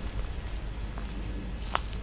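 Footsteps through outdoor undergrowth over a steady low rumble, with two small sharp clicks about one second and just under two seconds in.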